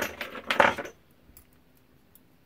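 Small copper and brass scrap pieces clinking and rattling against each other on a workbench as hands sort through them, busiest in the first second, then a few faint ticks.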